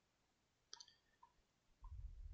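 Near silence with a faint computer-mouse click about three-quarters of a second in and a couple of tiny ticks after it, as a web page is scrolled. A low muffled rumble starts near the end.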